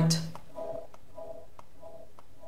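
Faint, short pitched keyboard notes repeating about twice a second, with soft clicks between them: slices of a keys sample being played back from a sampler's pads.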